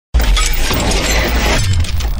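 Loud shattering sound effect of a logo sting, hitting suddenly just after the start with a deep bass boom under it, its high crackle thinning out near the end.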